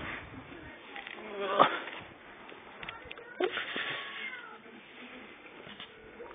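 Cocker spaniel puppy giving short, high cries. The loudest comes about a second and a half in, with more a little past halfway, some falling in pitch.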